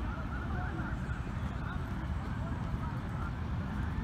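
Low, uneven rumble of wind on the microphone in an open field, with faint distant calls scattered through it.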